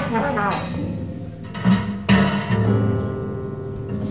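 Free-jazz improvisation: a trumpet phrase ends right at the start, then sharp percussive hits about half a second and two seconds in, over low sustained tones. The hits and low tones fit the strings of an upright string instrument being struck with a stick and mallet.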